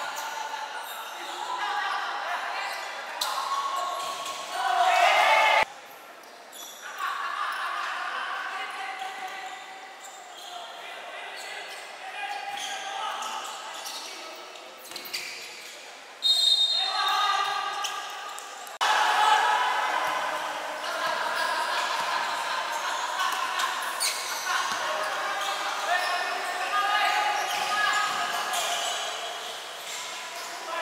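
Live indoor basketball game: the ball bouncing on the court with sharp knocks, and players and spectators calling out indistinctly, echoing in a large gym hall.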